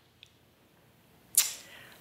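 Near silence in a small room, then a woman's short, sharp intake of breath about one and a half seconds in, just before her speech resumes.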